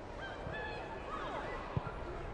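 Football stadium crowd ambience, a steady low murmur, with a distant call that falls in pitch just past the middle and a single thud near the end.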